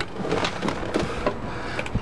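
Camera handling noise: irregular rustling with scattered soft clicks and knocks as the camera is moved around inside a truck cab.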